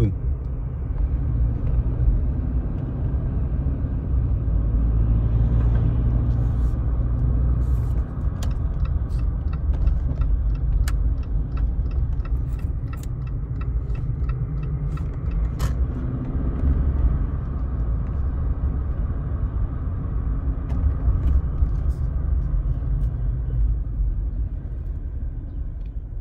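Steady low rumble of a moving car's road and engine noise, heard from inside the vehicle, with scattered light clicks.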